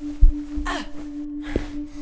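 A low thump, then a short vocal cry falling in pitch, over a steady droning music tone; a sharp click comes late on.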